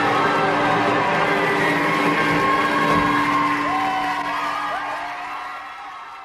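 Closing bars of a 1950s rock and roll band recording, with a held chord under short sliding notes, fading out over the last couple of seconds.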